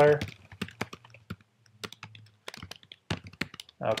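Typing on a computer keyboard: irregular runs of key clicks with short gaps between them.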